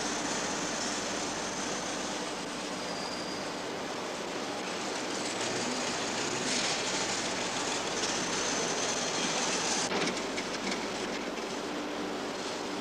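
A steady rushing background noise with a faint hum under it. It grows brighter about six and a half seconds in and drops off sharply about ten seconds in.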